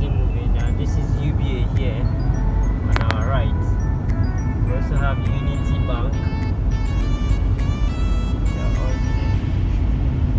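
Steady low rumble of a car driving, heard from inside the cabin, under music with a voice in it and ringing, note-like tones.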